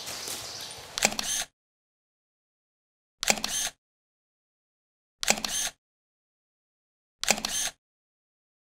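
Camera shutter sound effect, repeated four times about two seconds apart with dead silence between: each a sharp click with a short half-second tail.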